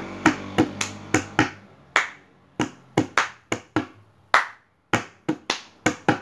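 Hands playing a percussion rhythm on a tabletop: about sixteen sharp strokes in an uneven, repeating pattern, some bright slaps and some duller knocks.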